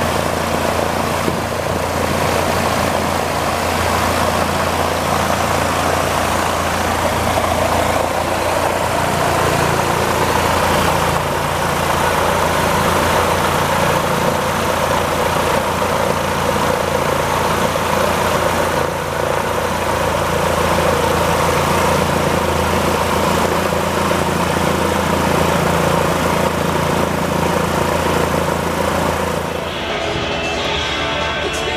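A loud, steady engine-like drone with a deep, constant hum underneath, unchanging in level throughout.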